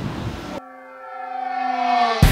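Brief outdoor ambience cuts off about half a second in. A sustained horn-like synthesized chord follows, swelling louder and bending down in pitch near the end, as a logo sting.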